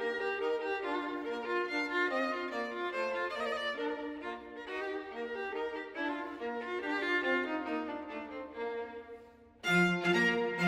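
A string quartet playing Classical-period chamber music, the violin line on top. Near the end the music breaks off briefly, then comes back louder with a lower part added.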